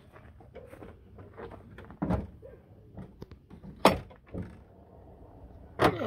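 The hood latch and hood of a 2002 Dodge Ram 1500 being released and lifted: a series of short metallic clicks and clunks, the sharpest about four seconds in.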